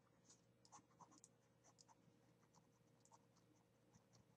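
Near silence: room tone with a few faint, scattered ticks, most in the first second and a half and one more about three seconds in.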